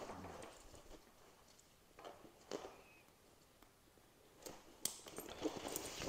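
Faint handling of a fabric travel backpack: rustling as the hidden shoulder straps are pulled out, with a few separate clicks as the strap buckles are snapped back together.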